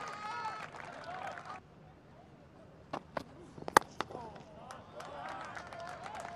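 Quiet cricket-ground ambience with faint crowd voices, broken by a few sharp knocks about three to four seconds in; the sharpest of them is a cricket bat striking the ball.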